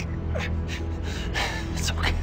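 Several short, ragged gasping breaths from a man, over a low, steady droning music score.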